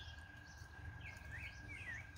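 Songbird singing faintly: a quick run of short, gliding chirps that starts about halfway through.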